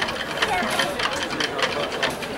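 Marching band drumline playing a cadence of sharp stick clicks, about four a second, with people talking nearby.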